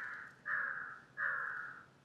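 A crow cawing repeatedly, one caw roughly every three-quarters of a second.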